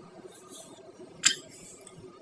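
A single sharp click about a second and a quarter in, over faint steady background noise.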